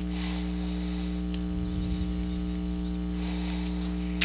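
Steady electrical mains hum, a low buzz with many overtones, running throughout. A few faint small clicks sound over it.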